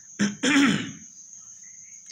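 A man clears his throat once about half a second in: a short catch, then a longer rasping clear. A faint, steady high-pitched whine runs underneath.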